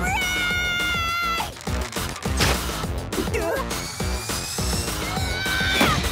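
Cartoon background music with a steady beat, overlaid with sound effects: a long held high-pitched tone in the first second and a half, a sharp hit about two and a half seconds in, and a loud falling glide near the end.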